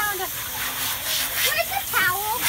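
Garden hose spraying water with a steady hiss, under children's voices.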